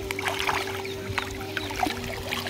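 Many quick small splashes of river water at the surface, over a steady low hum.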